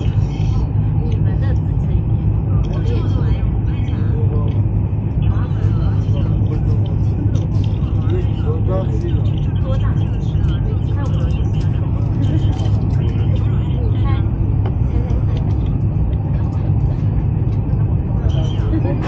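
Cabin noise of a Chinese high-speed train (CRH EMU) running at speed: a steady, even low rumble.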